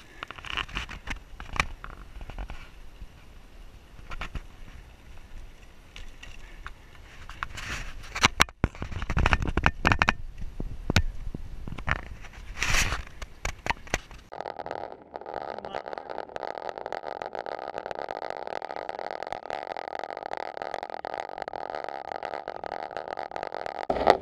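Wind buffeting the microphone of a camera mounted on a road bicycle while riding, with low road rumble and irregular knocks and rattles. About fourteen seconds in the sound switches abruptly to a steadier, even rushing noise.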